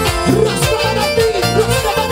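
Live Andean huayno band playing an instrumental passage: violins carrying a sliding melody over harp, electric bass and keyboard, with the bass notes pulsing in a steady beat and no singing.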